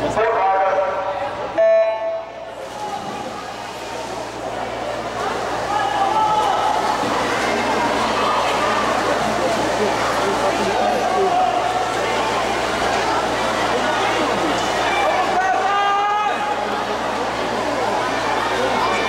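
Swimming race start signal sounding once, short and loud, about one and a half seconds in after a brief hush. Then spectators shout and cheer for the swimmers, building up over a few seconds and holding steady.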